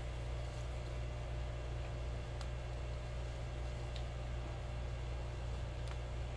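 A steady low machine hum under a faint even hiss, with two faint clicks partway through.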